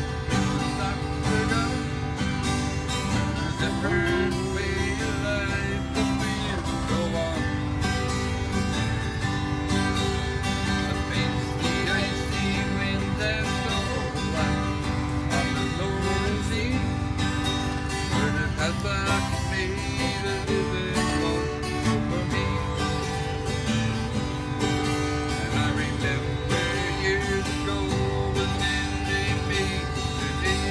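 Mandolin playing the instrumental opening of a folk song, a picked melody that runs on without a break.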